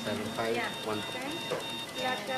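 Indistinct voices in a hospital intensive care unit over a rapid string of short, high electronic beeps, about five a second, typical of monitoring equipment.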